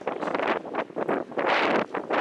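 Wind buffeting the camera microphone in irregular gusts, rising and falling every fraction of a second, with the strongest gust near the end.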